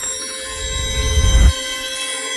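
Logo-intro sound design: sustained synth tones layered over a low rumble that swells and cuts off suddenly about one and a half seconds in.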